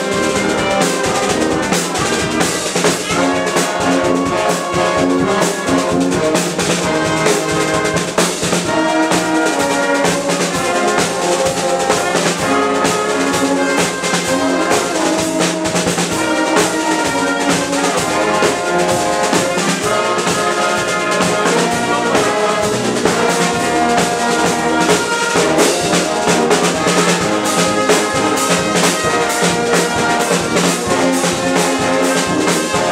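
A dweilorkest (Dutch brass street band) playing live and loud at a steady level. Trumpets, trombones, euphoniums and a sousaphone carry the tune in chords over a bass drum and snare drum keeping a regular beat.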